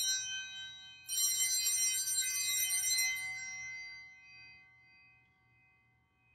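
Altar bells, a cluster of small bells, rung at the elevation of the consecrated host. The ringing from just before carries into the start, a fresh ring comes about a second in, and it then dies away over the next few seconds.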